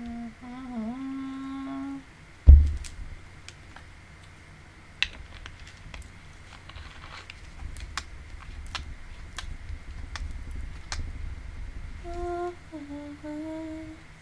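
A woman humming a short, wavering note, then a sharp low thump about two and a half seconds in, the loudest sound here. Scattered light clicks follow, and near the end she hums again in two short notes.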